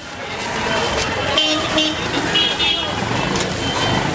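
Busy street traffic with vehicle horns tooting: two short toots about a second and a half in, then another about a second later, over voices and general street noise.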